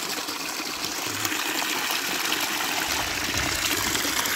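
Spring water pouring steadily from a pipe spout into a stone trough, splashing and churning in the basin.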